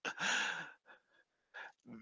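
A man's long, breathy sigh-like exhale of laughter, lasting about half a second at the start, followed by a few faint short breaths.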